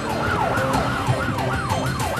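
Emergency-vehicle siren in a fast yelp, each sweep dropping in pitch, about three a second, over the low hum of a moving vehicle, heard from inside the car as it closes in.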